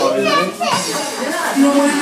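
Several people talking at once in a room, children's voices among them; music with held notes starts near the end.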